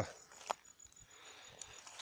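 Faint buzz of Africanized honeybees crawling and vibrating their wings on the top bars of an opened bait box, a swarm that is dying off, which the beekeeper puts down to cold or poison without being sure. A light click sounds about half a second in.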